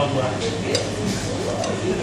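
A few light clicks of metal spoons against glass sundae bowls, under faint voices.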